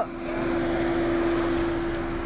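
A steady, even hum holding one pitch, over a soft hiss of background noise.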